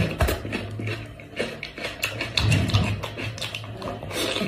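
Close-up wet chewing and smacking of cooked sheep's head meat, with crackling clicks as the meat is bitten and torn from the bone, louder about two and a half seconds in. A low steady hum runs underneath.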